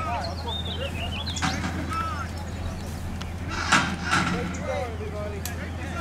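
Men's voices calling out over the steady low drone of a World War II armored vehicle's engine, with one sharp crack a little past the middle.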